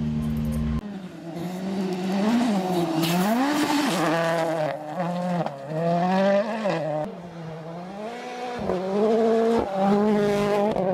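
A steady low hum cuts off under a second in. A rally car engine follows, revving hard, its pitch climbing and dropping again and again as it accelerates and changes gear.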